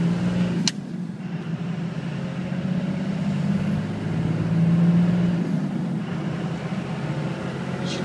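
High-output 5.9-litre Cummins turbo-diesel inline-six heard from inside the cab while the truck drives at about 2,000 rpm: a steady low drone that swells briefly near the middle and then eases. A single sharp click comes about a second in.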